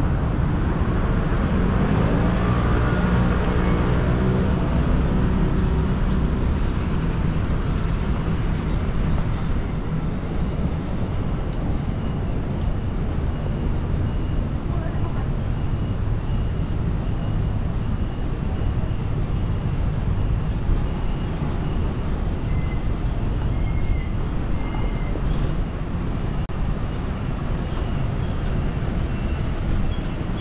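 Busy city street ambience: a steady rumble of road traffic, with vehicles passing, the loudest in the first few seconds.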